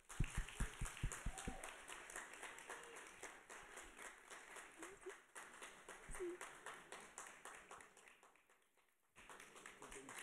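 Audience applauding, a dense patter of many hands clapping, with a few low thumps in the first second and a half. The clapping thins out and almost stops shortly before the end, then picks up again.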